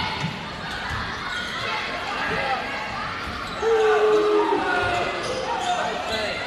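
Indoor volleyball rally on a hardwood gym court: sneakers squeaking in short chirps, a few knocks of the ball being played, over the chatter and calls of players and spectators, with a louder stretch about halfway through.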